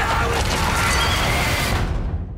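Film soundtrack of horses charging through snow: a horse neighs over a loud, dense rush of galloping.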